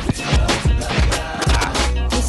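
Vinyl record being scratched by hand on a Technics turntable over a hip-hop beat: a run of quick scratches with sharp pitch bends, cut in and out at the mixer, with deep kick drum and bass underneath.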